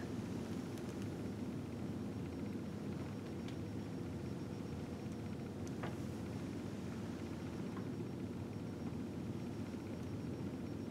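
Electric potter's wheel running steadily with a low, even hum, spinning a freshly poured acrylic painting. Two faint ticks come a few seconds apart in the middle.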